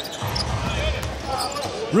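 Live arena sound of a basketball game: a ball being dribbled on the hardwood court over faint voices and crowd murmur, with a low rumble that rises a moment in.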